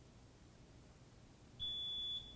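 Quiet room tone, then near the end a single steady high-pitched beep lasting about half a second: the quiz buzzer signalling that a contestant has buzzed in to answer.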